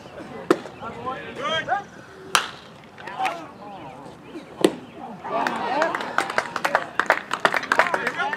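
Sharp cracks of a baseball in play: three single knocks about two seconds apart, then voices shouting over a fast run of clicks in the last few seconds.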